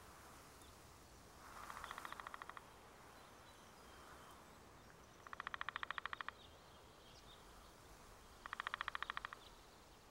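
Three rapid rattling trills from a bird, each about a second long and a few seconds apart, over faint outdoor ambience.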